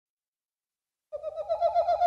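Silence, then about a second in a single whistle-like tone starts, its pitch warbling quickly up and down about eight times a second.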